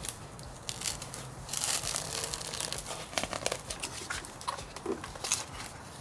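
Hands wedging a spacer under a battery pack and pressing the pack and its cables into the battery compartment of a small electric bike's frame: a run of rustling, crinkling and small clicks and knocks.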